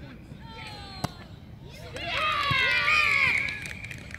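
A single sharp thud about a second in as a boot kicks a rugby ball off the tee, followed by several high voices shouting and cheering for about a second and a half.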